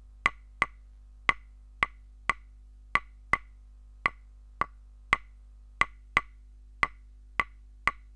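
A string of short, sharp, wood-block-like clicks, about two a second at uneven spacing, over a faint steady low hum.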